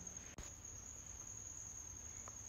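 A quiet room with a steady high-pitched whine, and a single sharp click about half a second in.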